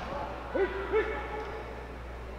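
Two short hooting shouts from people at ringside, about half a second and a second in, over the steady background noise of the hall.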